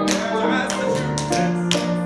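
Playback of the song's piano-led musical accompaniment, with several sharp taps of dancers' shoes striking the stage floor as they step; the loudest comes near the end.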